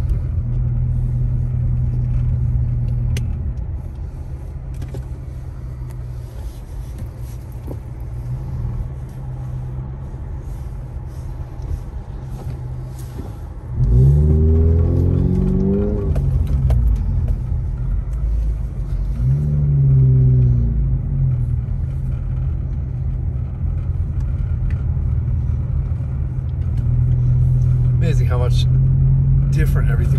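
Steady low drone of a vehicle's engine and tyres, heard from inside the cab while driving slowly on a snow-covered road. About halfway through, a voice sounds briefly, twice, louder than the drone.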